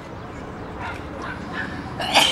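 Flat-coated retriever barking a few short, faint times as it is released to run.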